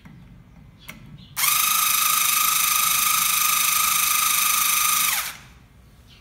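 A small cordless electric screwdriver runs at one steady speed for about four seconds, a high whine that winds down as it stops, driving the lower adjusting screw of a hand-operated pellet mould press back to its starting position. A small click comes just before it starts.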